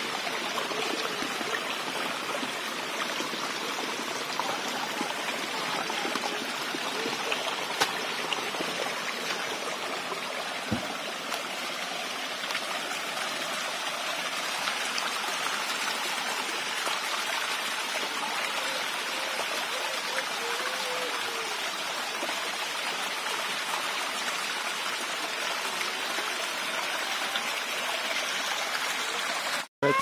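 Small, shallow forest stream running over rocks, a steady rush of flowing water.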